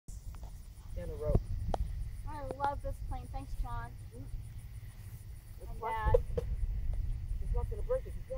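Short stretches of unclear talking voices, over a steady low rumble of wind buffeting the microphone.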